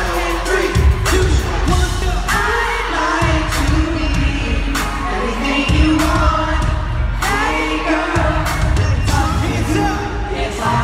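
Live amplified pop music in an arena: a sung vocal line over a heavy bass beat that drops out and comes back several times.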